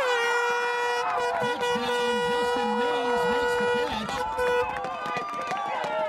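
An air horn sounding one long steady blast of about four seconds, then a short second blast, over shouting voices from the crowd as a pass is completed.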